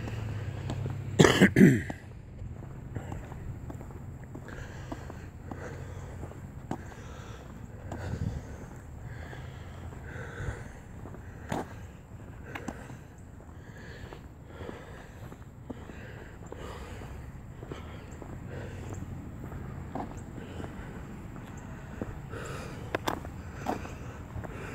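A man clears his throat loudly about a second in, then footsteps on pavement over a steady low rumble of background traffic.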